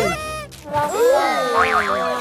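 Cartoon comedy sound effects: bouncy tones sliding up and down in pitch, with a quick wavering trill near the end, over light background music.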